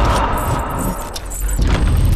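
Trailer sound effects: a loud, deep rumble with a jangling, metallic shimmer above it, easing a little past the middle and swelling again near the end.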